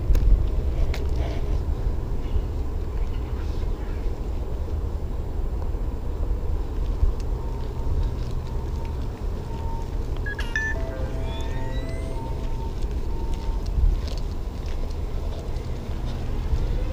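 Steady low rumble of outdoor wind and handling noise on a hand-carried camera's microphone, with faint intermittent beeps and a few short rising chirps about ten to thirteen seconds in.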